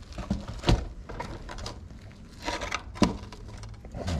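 Gritty bonsai soil mix crunching and scraping as a potted tree is turned and pressed down to seat its roots, with a few sharp knocks, the loudest about three seconds in.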